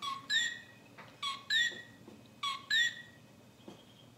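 Three high two-note whistled calls, evenly spaced about a second apart: each a short low note, then a higher note that rises a little and falls away.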